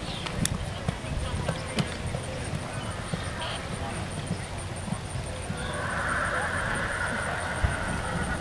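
Hoofbeats of a cantering horse on a sand arena: irregular dull thuds, with two sharp clicks in the first two seconds and a hiss that rises about six seconds in.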